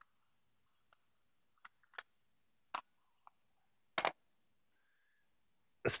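Scattered, irregular clicks and light knocks of small hard objects being handled and set down: a folding travel clock and portable CD players. The loudest is a double knock about four seconds in.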